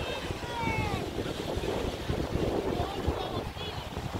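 Wind buffeting the microphone over the wash of surf on a sandy beach, with a few short, falling high-pitched calls near the start and again near the end.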